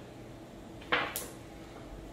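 Glass marbles clacking as a shot marble hits a target marble: a short knock and, a split second later, a sharp high click, about a second in.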